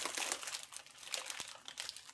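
Clear plastic cellophane wrappers on chocolate bars crinkling as a hand grips and moves them, crackling most in the first second and thinning out after.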